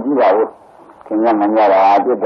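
A man's voice preaching a Burmese Buddhist sermon in drawn-out, sing-song phrases: one short phrase, a half-second pause, then a longer held phrase.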